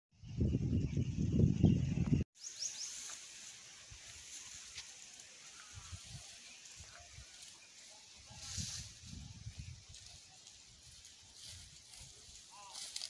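A loud, choppy low rumble that cuts off suddenly about two seconds in. Then a quiet rural background with faint bird chirps and soft, irregular rustling of a cow cropping grass and weeds.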